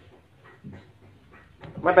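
Faint, short, irregular sounds from a hoary bamboo rat in its pen, about three a second; a man starts speaking near the end.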